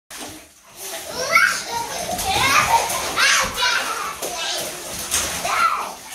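Young children's voices: excited, high-pitched chatter and calls that rise and fall, with no clear words.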